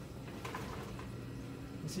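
Steady low hum of a laboratory fume hood's exhaust fan, with a few faint handling sounds about half a second in.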